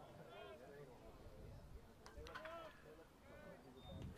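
Near silence: quiet ballpark ambience with a few faint, distant voices talking briefly.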